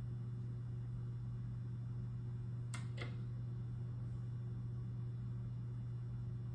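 Steady low electrical hum from the powered-up pinball machine, with two short clicks about a third of a second apart near the middle.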